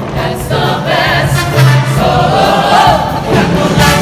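A show choir singing an upbeat number in full voice over instrumental backing with a steady beat.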